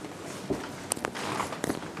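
Quiet room noise with a few soft knocks and clicks scattered through it.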